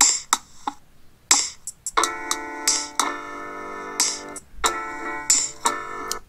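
Self-made samples triggered from the Koala Sampler app: a few sharp drum hits in the first second and a half, then sustained piano chords from about two seconds in.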